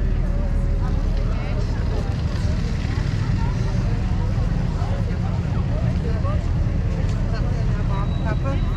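Busy city pavement ambience: passers-by talking in several overlapping voices over a steady low rumble of traffic and wind.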